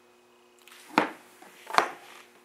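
Two sharp knocks, about a second in and again near the end: handling noise as the plastic CRT head units are moved and touched. A faint steady hum underlies them.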